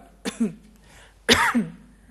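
A man coughs once, sharply, about a second in, after a short voiced throat sound near the start.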